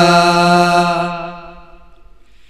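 Male voices singing in unison, holding one long steady note that fades out about a second and a half in.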